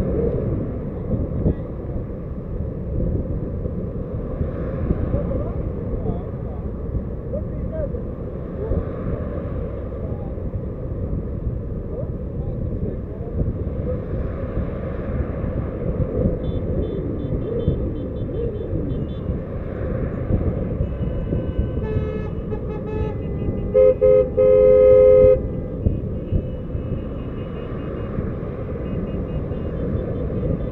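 Steady rumble of wind and road noise from a moving car. Car horns honk in short repeated toots about 22 seconds in, followed by a loud held blast of about a second and a half.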